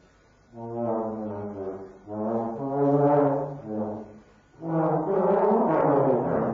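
Trombone playing low held notes in three phrases with short breaks between them, the last phrase growing rougher and noisier near the end.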